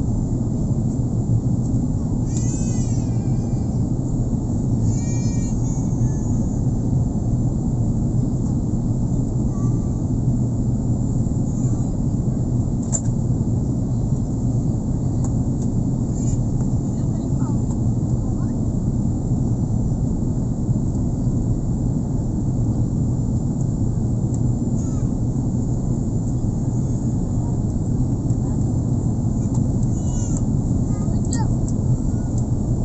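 Steady jet airliner cabin noise in flight: a constant low rumble of engines and airflow heard inside the cabin during the descent.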